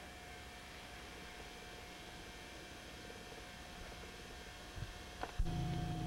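Faint, steady background hiss of a home-video recording. About five seconds in comes a sharp click where the tape cuts to a new shot, and a louder steady low hum follows.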